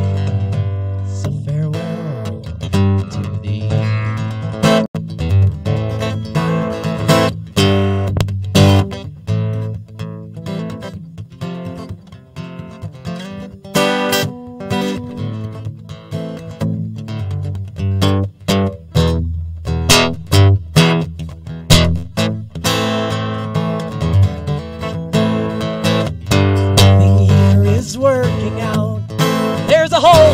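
Live band music led by a strummed acoustic guitar, an instrumental stretch of a song with no singing.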